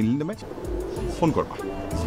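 Domestic pigeons cooing, under background music, with a man's voice at the start.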